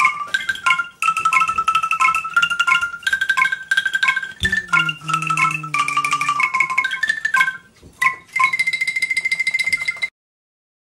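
Angklung, tuned bamboo tubes in a frame shaken by hand so that each note sounds as a fast rattle, playing a melody note by note. About halfway through a lower note comes in and steps down for about two seconds. After a short break near the end, one note is held and then cuts off suddenly.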